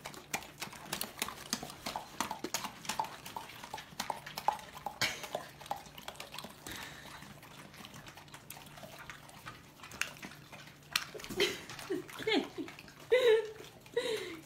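Dogs eating strands of spaghetti from a hand, with quick wet chewing and smacking clicks. Near the end come a few short whines that bend up and down in pitch.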